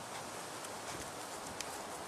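A few faint, light knocks over steady background hiss: kettlebells set back down on the ground during renegade rows.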